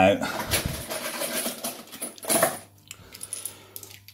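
Coins clinking and jangling: a run of small metallic rattles and clicks, busiest in the first three seconds, with a louder clatter a little past the middle.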